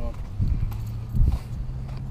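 Footsteps and handling bumps on a body-worn camera, heard as a few irregular low thuds over a low rumble.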